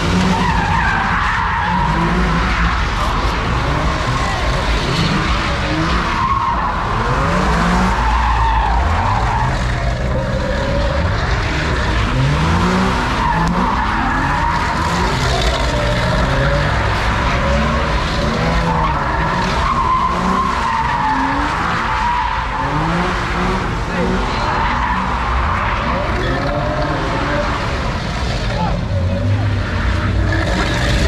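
A car's engine revving up and down over and over while its tyres squeal and skid on the asphalt as it does doughnuts, with crowd voices underneath.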